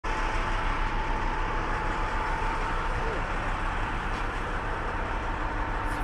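Steady drone of running fire engines, with a constant whine over the low engine hum.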